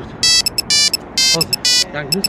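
Mobile phone ringtone for an incoming call: a fast, rhythmic run of short and longer electronic beeps.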